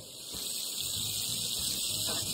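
Fish fillets sizzling steadily in melted butter and oil in a frying pan.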